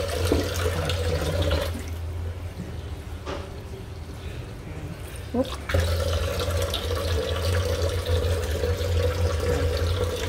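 Kitchen tap running into a stainless-steel sink, a steady rush of water with a constant hum. The flow weakens about two seconds in and comes back strong about six seconds in.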